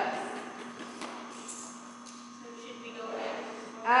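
Steady low hum of a large indoor hall, with a faint voice in the distance in the second half.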